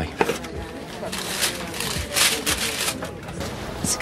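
Background café noise with faint chatter and two or three short bursts of hissing.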